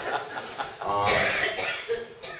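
A person coughing amid voices in the room.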